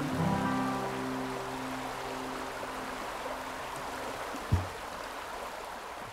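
Acoustic guitar's final chord, struck just after the start, ringing and fading away over a few seconds against the steady rush of a river. A brief low thump about four and a half seconds in.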